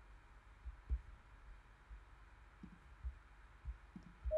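Quiet room tone with a few soft, low thumps, the strongest about a second in.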